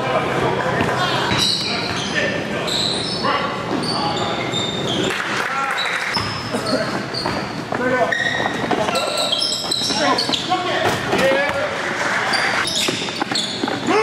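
Live basketball game sound in a gym: a basketball bouncing on the hardwood court amid a din of players' and spectators' voices, echoing in the large hall.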